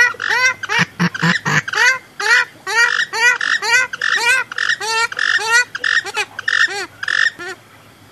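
Waterfowl calls: a rapid, steady series of honking calls, about four a second, that stops suddenly near the end.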